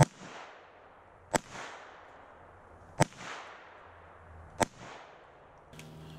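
Four single shots from a semi-automatic FN PS90 carbine in 5.7×28mm, spaced about one and a half seconds apart. Each shot is a sharp crack followed by a short echo that dies away.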